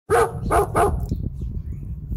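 Dog barking three times in quick succession at a squirrel on a tree trunk just out of reach, followed by a run of quieter, rapid sounds.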